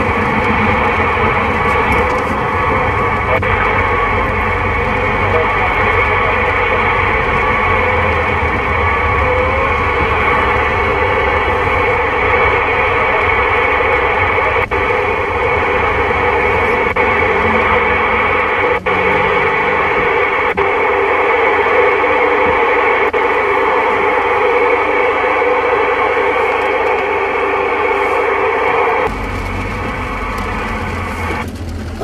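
President Lincoln II+ CB transceiver on AM, its speaker giving out a steady rush of static and interference from the 27 MHz band, with faint wavering whistles in the hiss early on. The rush drops away sharply about a second before the end.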